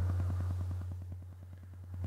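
A steady low electrical hum, with a fast, even buzzing pulse running through it.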